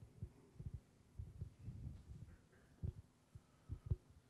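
Microphone handling noise: a string of soft, irregular low thumps and bumps.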